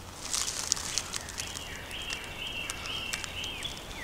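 Dry leaves and twigs crackle underfoot in short clicks during the first second or so. Then a bird repeats a short, clear, even note about two to three times a second. A steady low rumble of highway traffic runs underneath.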